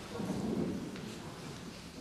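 Concert hall audience noise as applause dies away: a low rustling and shuffling rumble that swells briefly, then fades while the hall settles before the music starts.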